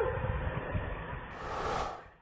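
Low-quality audio from the Popocatépetl volcano monitoring camera: a muffled, noisy rumble that slowly fades, just after the end of a wavering, cry-like sound at the very start, with a brief brighter hiss near the end.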